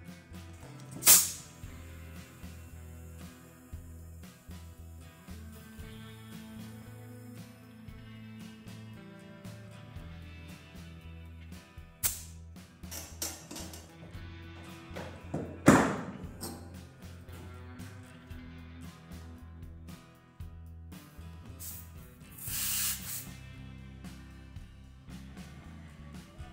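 Short hisses of compressed air at a tiller tire's valve stem as a new inner tube is inflated, over background music. There is a sharp burst about a second in, the loudest burst near the middle, and a longer hiss of about a second later on.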